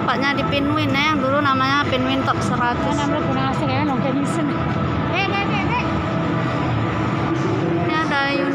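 A song with a sung vocal, the voice holding wavering notes over a steady background.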